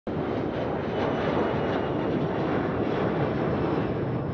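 Steady rushing outdoor noise around an airport terminal roadway, with no distinct events.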